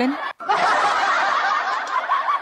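Laughter, dense and continuous, that drops out for an instant about a third of a second in.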